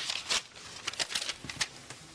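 Irregular scratchy rustles and crackles of a paper note being handled.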